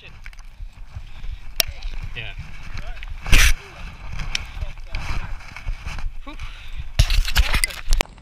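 Low rumbling and knocking handling noise from a body-worn GoPro as the wearer moves about, with a sharp loud burst about three and a half seconds in and more near the end, and faint voices in the background.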